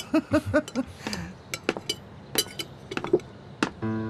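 Tableware clinking: a handful of sharp, separate clinks of cutlery against plates and glasses. A short laugh comes before them at the start, and accordion music begins just before the end.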